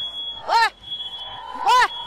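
Smoke alarm sounding a high, steady tone that cuts in and out, set off by smoke from a frying pan fire. Two loud shouts, played backwards, break over it.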